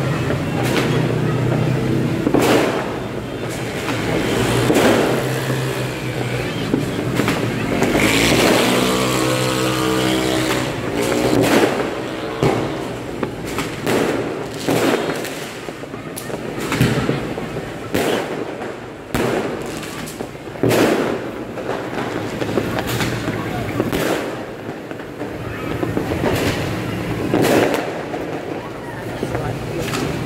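Fireworks and firecrackers going off over and over, a sharp bang about once a second, over the engines of passing motorbikes and cars.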